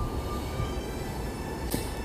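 Wind buffeting the microphone outdoors: a steady low rumble, with faint thin high tones above it.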